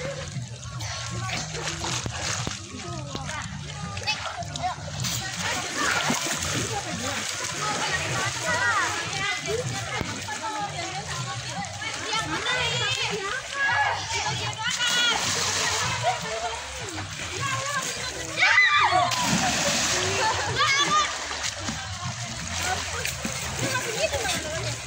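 Children splashing and swimming in a swimming pool, with children's voices calling and chattering over the splashing throughout. A louder burst of noise comes a little over three-quarters of the way through.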